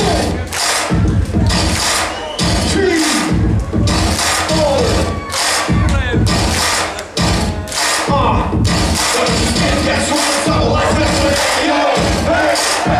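Live hip-hop music with a heavy bass beat, and a large crowd cheering and shouting over it.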